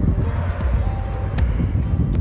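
Steady low outdoor rumble of wind on the microphone mixed with road traffic, with a single faint click about a second and a half in.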